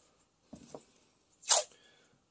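Blue painter's masking tape pulled off its roll: a short, sharp rip about a second and a half in, after a few faint handling rustles.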